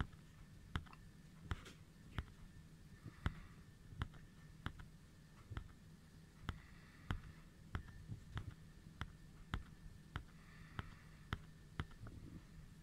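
A series of light, sharp clicks, roughly one or two a second at uneven spacing, over a faint steady low hum.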